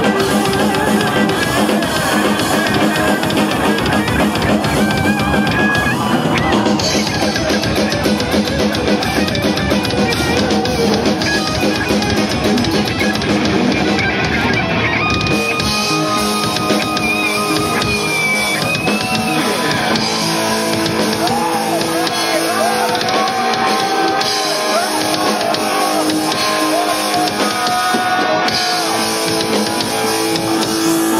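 Live heavy metal band playing loud, with distorted electric guitars and a drum kit. In the second half the low end thins and a high held guitar note gives way to bending lead lines.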